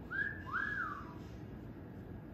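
Moluccan cockatoo giving a two-note whistle: a short high note, then a longer one that rises and falls, together lasting under a second.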